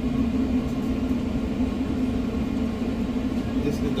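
Steady low mechanical hum of kitchen equipment, with a few steady tones in it over a low rumble.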